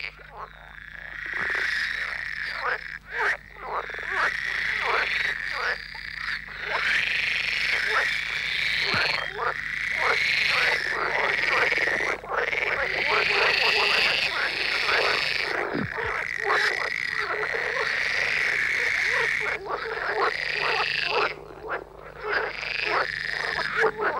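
A chorus of male water frogs calling, overlapping runs of rapid pulsing croaks with only brief lulls. Each male calls by blowing up the paired vocal sacs at the corners of its mouth, advertising to females in the spring breeding season.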